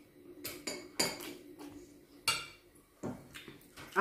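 Metal forks and spoons clinking and scraping against ceramic dishes as noodles are eaten: a string of separate short clinks, with the sharpest about a second in and again a little after two seconds.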